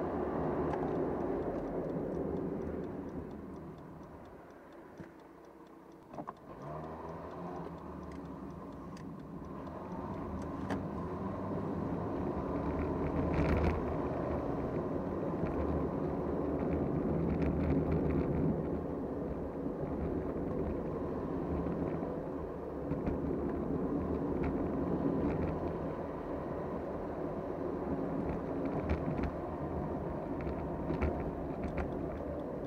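Car cabin road and engine noise picked up by a dashboard camera while driving, dying down for a couple of seconds about four seconds in as the car slows, then building again as it picks up speed.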